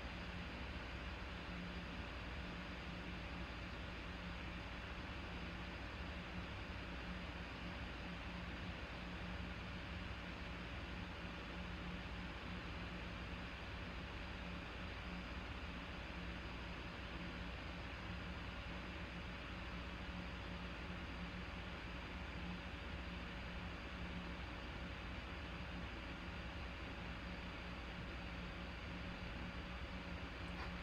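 Steady low background hiss with a constant low hum and no distinct events: room tone.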